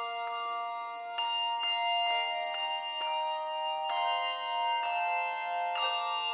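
A handbell choir ringing a piece: bells of several pitches are struck in turn, about two a second, and each is left to ring so the notes overlap.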